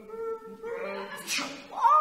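A performer's voice making wordless, cat-like vocal sounds, with a held tone early on and a rising-then-falling call near the end.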